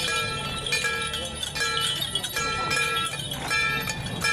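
Procession music: a held tone at the same few pitches, breaking off and restarting every half second or so, with sharp percussive strikes and crowd voices.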